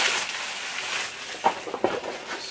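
Clear plastic packaging rustling and crinkling as a nylon duffel bag is pulled out of it, fading over the first second. A few short handling clicks and rustles follow near the end.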